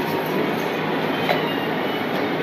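Steady background noise, an even hiss with a faint low hum underneath, with no distinct events.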